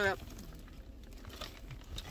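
Faint rustling and crinkling of a paper fries carton being handled, over a low steady rumble of the car cabin.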